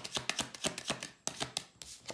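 Tarot cards being shuffled by hand: a quick run of crisp card clicks, about six a second.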